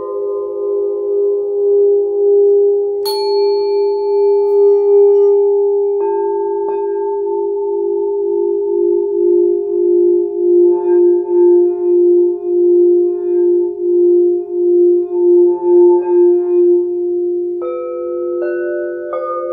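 Several singing bowls struck in turn, each ringing on in a long, steady tone at its own pitch, with fresh strikes about three and six seconds in and again near the end. Through the second half the low main tone pulses in a slow wobble, about twice a second.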